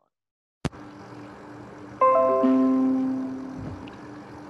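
A click as the audio comes on, then faint background hiss; about two seconds in, a chime of several bell-like notes that start in quick succession and fade away over about two seconds.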